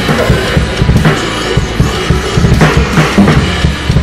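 Acoustic drum kit played hard along to the recorded song: quick bass drum and snare hits with cymbal crashes, over the band's backing track.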